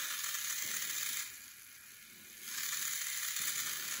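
Small DC gear motor with a plastic gearbox whirring in two runs of a bit over a second each, with a quieter gap between. It speeds up when the light sensor is covered and slows or stops when light reaches it.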